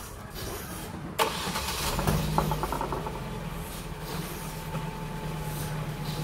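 A sharp click about a second in, then a Ford car's engine cranks briefly on the starter, catches and settles into a steady idle.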